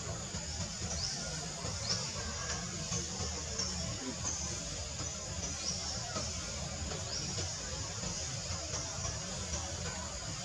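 Steady outdoor ambience, a constant hiss and low rumble, with short high chirps repeating roughly once a second.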